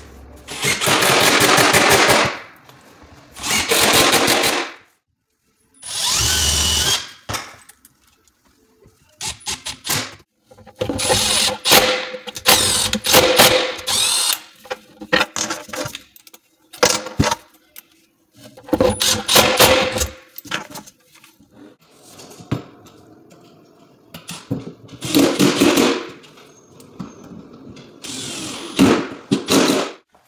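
Cordless screw gun running in about seven short bursts of one to three seconds each, with a fast rattle, as it works the screws that hold the cabinet face frame. Quieter knocks and handling sounds fall in the gaps between bursts.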